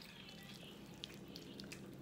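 Quiet room tone: a faint steady low hum with a few soft clicks, one about a second in.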